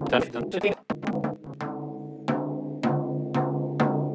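A floor tom's bottom head tapped with a drumstick near the tension rods, a quick flurry of taps at first and then single strikes about twice a second. Each strike rings on at the same steady pitch, a sign that the head is tuned evenly at every lug.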